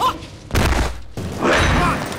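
Bursts of rapid gunfire from rifles in a film action scene, separated by short lulls, with men shouting over it.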